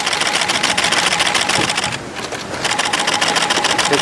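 Camera shutters firing in rapid, continuous bursts: a dense run of clicks that breaks off briefly about two seconds in, then starts again.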